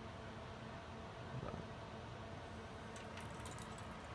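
Faint steady room hum, with a few soft clicks about a second and a half in and again near three seconds.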